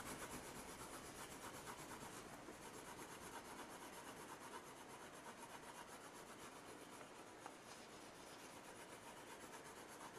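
Faint, even scratch of a Prismacolor coloured pencil worked back and forth in quick strokes on Bristol paper, pressed hard to blend a light colour into the darker layers underneath.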